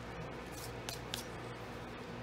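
Cardstock being placed and pressed flat by hand: three short, faint paper rustles around the middle, over a steady low hum.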